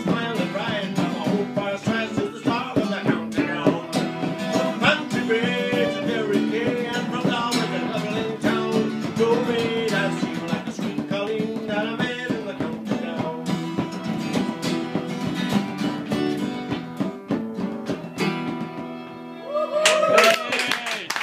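Live Irish-style folk music: an acoustic guitar strummed, a fiddle playing the wavering tune, and a bodhrán beaten in a steady rhythm. The playing thins out shortly before the end as the tune winds down.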